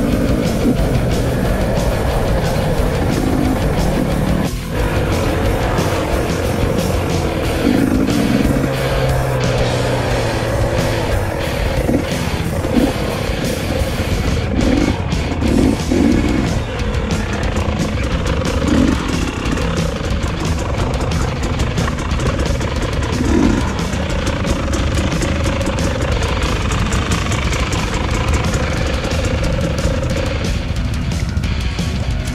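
A KTM 300 EXC two-stroke dirt bike engine running, heard under loud rock music.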